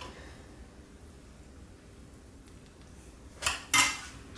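A metal serving spoon scooping cooked chicken pieces out of cookware, giving two short clinking scrapes near the end over quiet room hum.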